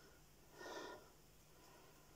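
Near silence with a faint steady hum, broken once about half a second in by a soft, short breath of air lasting about half a second.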